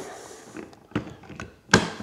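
Knocks from handling a stick hand blender as it is set into a glass measuring jug: a faint tap about a second in and a louder thunk near the end. The blender motor is not running.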